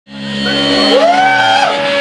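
A live rock band's amplified instruments sounding on stage: steady held notes, with a pitch that slides up, holds and falls away about a second in.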